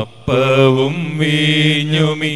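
A priest chanting a Malayalam liturgical prayer of the Syro-Malabar Qurbana, in long held notes on a nearly level pitch, with a short break for breath just after the start.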